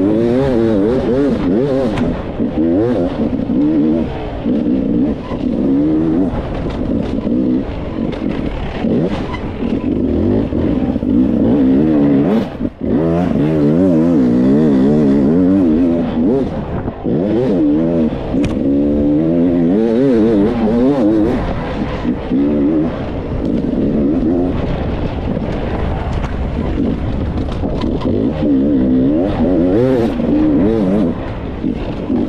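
Enduro dirt bike engine heard from the rider's position, revving up and easing off over and over as it is ridden along a rough trail, its pitch rising and falling with the throttle. The engine sound drops out briefly once, a little before halfway.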